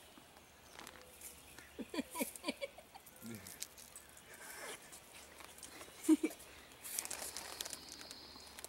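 Soft rustling and clicking of a llama's lips nibbling feed from a hand at a wire fence. A few short voice sounds come about two seconds in, and a brief laugh about six seconds in.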